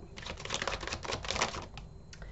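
A deck of oversized tarot cards being shuffled in the hands: a quick run of papery card clicks lasting about a second and a half.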